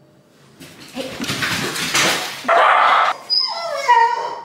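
Dog barking and whining, set off by a doorbell, ending in a drawn-out falling whine.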